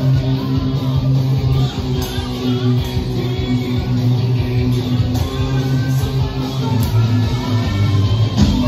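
Electric guitar playing a black metal riff, low notes held and changing every second or two.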